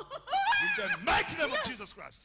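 A person's voice in two short stretches of wordless vocalising whose pitch rises and falls.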